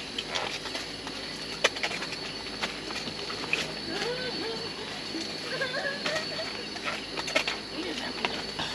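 Steady high-pitched insect drone, with scattered sharp clicks and faint wavering voices.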